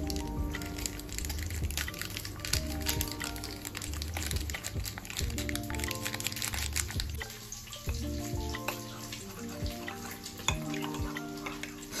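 Background music with held chords over a pulsing bass line, with many small clicks and crackles over it.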